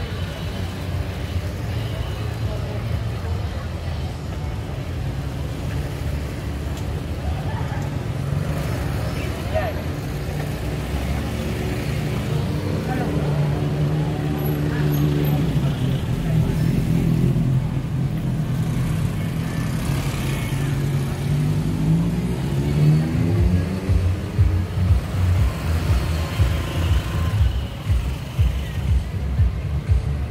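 Street traffic: vehicle engines running close by, with a pickup-truck taxi's engine humming steadily through the middle, then an engine rising in pitch as it speeds up about two-thirds of the way through. Motorbikes and people's voices are heard along with it.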